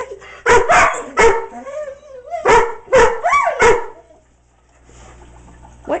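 A German Shorthaired Pointer barking at goldfish in an aquarium: six sharp barks in two bursts of three, with short rising whines between them.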